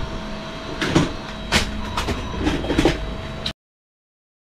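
Plastic toys clattering and knocking as they are handled and dropped from a plastic bin into a cardboard box, with about half a dozen separate knocks over a faint steady hum. The sound cuts off suddenly about three and a half seconds in.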